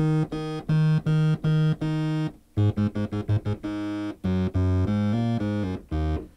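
Yamaha TG77 FM tone generator playing a bright sawtooth tone from three operators, two of them with phase sync off, so each note starts at a different point in its cycle and varies in tone and loudness: a dynamic and interesting sound. The same note is played repeatedly about twice a second, then after a short break comes a quick run of short lower notes and a few longer notes at changing pitches.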